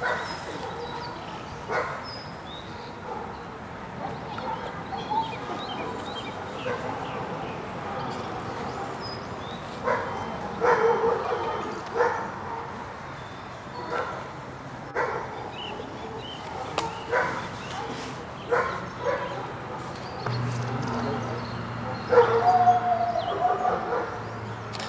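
A dog barking in short single barks, on and off, with the loudest cluster about ten seconds in and again near the end.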